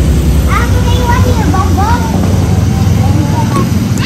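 A steady loud low rumble, with children's voices calling briefly over it in the first half.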